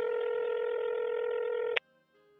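Telephone ringback tone as heard by the caller: one steady ring about two seconds long that cuts off suddenly.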